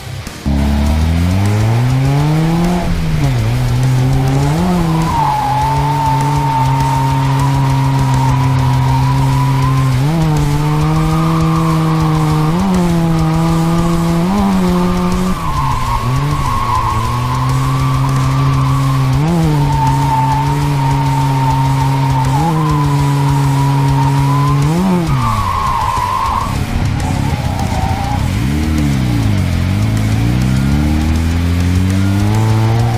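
Mazda RX-7 FC's 13B rotary engine held at high revs through a drift, the revs dipping and climbing back every few seconds as the throttle is worked, over steady tire squeal.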